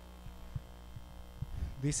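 Steady low electrical mains hum in a pause between speech, with a man's voice starting up again near the end.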